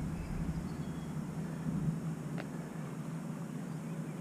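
Electric RC Tiger Moth biplane's motor and propeller droning faintly and steadily from a distance, with a low wind rumble on the microphone that dies away in the first couple of seconds.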